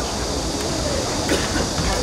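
Outdoor football-pitch ambience: a steady rumbling noise with faint, distant shouting from players, and one short sharp knock about halfway through.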